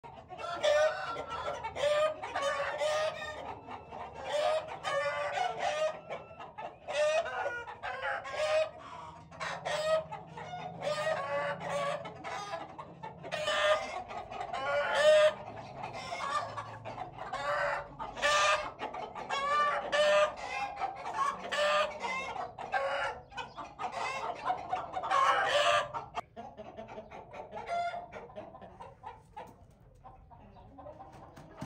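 Aseel chickens clucking and crowing: a steady run of short pitched calls, one after another, that thins out in the last few seconds.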